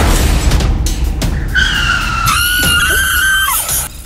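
A car skidding through loose dirt, with a rushing noise of tyres and grit over background music. From about halfway through, a high, steady squeal sets in; it bends down in pitch and stops just before the end.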